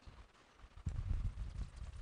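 Soft, rapid low knocks and rubbing that start about a second in: the movement noise of a person stepping up to a whiteboard and writing on it with a marker.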